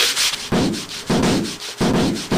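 Hand sanding: sandpaper rubbed hard back and forth across a small piece of wood in repeated rasping strokes, about half a second each, starting about half a second in.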